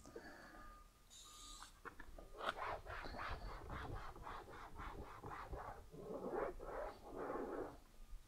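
A short, faint hiss of a fine-mist trigger sprayer about a second in, then a microfiber towel rubbing over a hard plastic van door panel in quick, repeated wiping strokes, about three a second.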